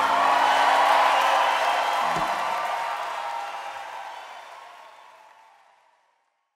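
Audience applauding and cheering, fading out to silence. A low hum runs under it until a single low thump about two seconds in.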